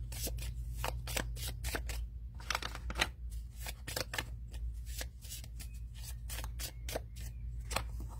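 A deck of oracle cards being flicked through and shuffled by hand, card sliding over card in a run of quick, irregular snaps.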